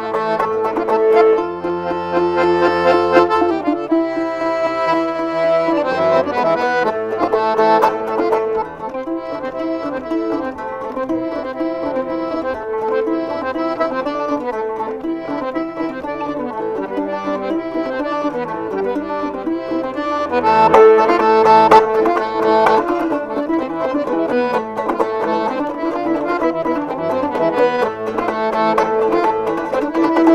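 Piano accordion playing a Kyrgyz folk tune in sustained chords, with a komuz plucked alongside it. The music swells fuller and louder about two thirds of the way through.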